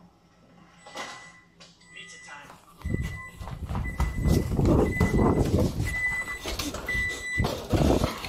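An electronic oven timer beeps about five times, a high single-tone beep roughly a second apart. Under it there is a loud commotion of voices and camera handling as the camera rushes to the oven.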